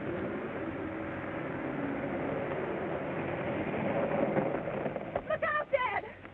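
An old touring car's engine running as it draws nearer: a steady, rough noise that grows slowly louder for about five seconds.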